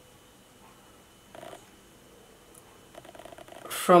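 Quiet room with faint, brief rustles of a makeup wipe dabbed against the skin under the eye, once about a second and a half in and again near the end, just before speech resumes.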